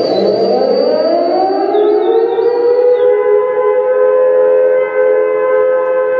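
Air-raid style siren wail that rises in pitch over about two seconds, then holds one steady, loud note.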